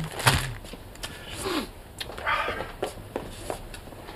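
A short laugh, then scattered light rustling and handling noises of tissue wrapping paper being unfolded, with a brief louder rustle about two seconds in.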